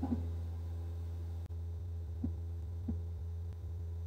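A steady low electrical hum with two faint clicks a little past the middle.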